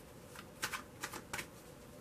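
A deck of oracle cards being shuffled by hand: five or six short, soft card snaps at uneven intervals.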